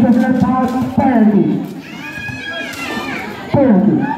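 Spectators yelling and calling out, with no clear words: loud voices, a high-pitched gliding call in the middle and a falling shout near the end.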